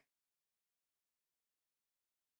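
Near silence: the sound drops to nothing between the player's remarks.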